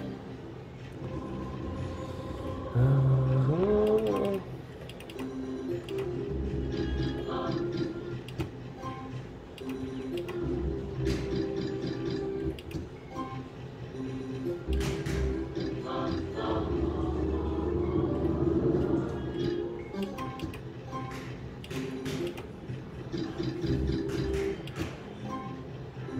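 Book of Ra Classic slot machine in its free-spin bonus, playing its looping game melody while the reels spin and stop with short clicks and win jingles. A loud rising tone comes about three seconds in.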